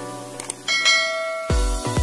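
Animation sound effects over music: a couple of short clicks, then a bright bell ding that rings on, as a cursor clicks a notification bell icon. About three quarters of the way through, a heavy bass beat comes in.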